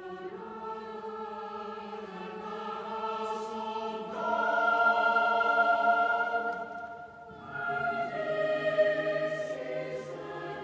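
Choir of children's and adult voices singing a sacred choral anthem in sustained chords. The chords swell louder about four seconds in, ease off briefly around seven seconds, then build again.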